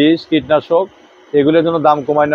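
A man speaking in Bengali, with a short pause in the middle.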